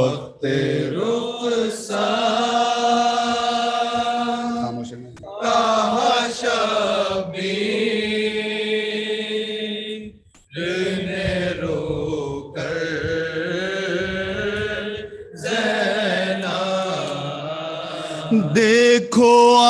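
Several men chant a noha, an Urdu mourning lament, in unison into a microphone. It comes in long held phrases with short breaks roughly every five seconds.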